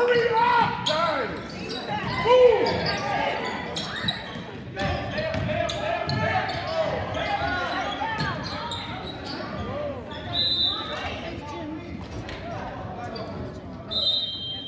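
Basketball game in a gymnasium: spectators' and players' voices and shouts echoing in the large hall, with a basketball bouncing on the hardwood floor and scattered sharp knocks. The loudest shout comes about two and a half seconds in.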